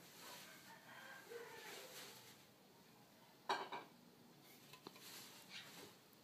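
Near silence: faint room tone, broken by one brief, faint sound about three and a half seconds in.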